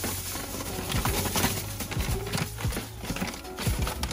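White terrarium sand pouring out of a plastic bag into an enclosure, with irregular rustling and crinkling of the bag, over background music.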